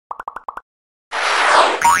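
Logo-animation sound effects: five quick pitched pops in the first half-second, then a whoosh lasting about a second that ends in a rising swoop.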